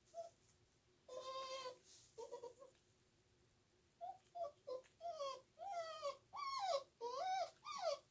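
A puppy whining: one drawn-out whine about a second in and a couple of short ones just after, then from about four seconds in a quickening run of short whines that rise and fall in pitch.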